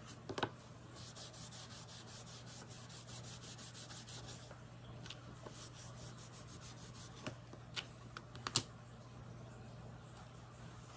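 A cotton pad rubbed quickly back and forth over a metal nail-stamping plate, giving a scratchy swishing of several strokes a second. A few light clacks come as plates are handled on the silicone mat, one near the start and a cluster near the end.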